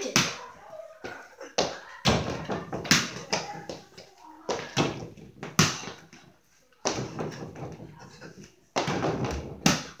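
A small mini basketball being bounced and shot at an over-the-door hoop: a string of uneven knocks and thuds, about nine in all, with a short quiet gap just past the middle.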